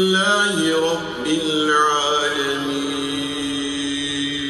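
A man's voice chanting in the mosque, a drawn-out melodic phrase that moves through several held notes and settles on one long held note from about two seconds in.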